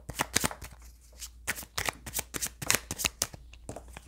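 A deck of tarot cards being shuffled by hand: quick, irregular flicks and slaps of cards, with a short lull about a second in.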